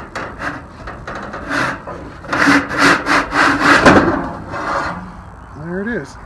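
Galvanized sheet-metal damper plate scraping and rubbing against the evaporative cooler's metal housing as it is worked out of its slot, in a run of rasping strokes that are loudest around the middle.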